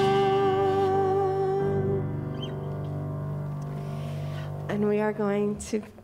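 A woman's voice holds the final sung note of a hymn over a small worship band with guitar and keyboard; the voice stops about two seconds in and the band's last chord rings on and fades. Near the end she starts speaking.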